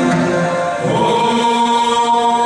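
Dance music with a choir singing; about a second in, the voices settle into long held notes.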